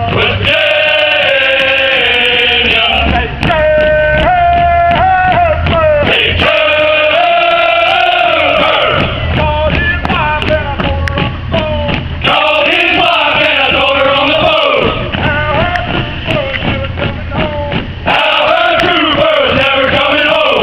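A group of men's voices singing a song together, with long held notes and slides between them, broken by short pauses.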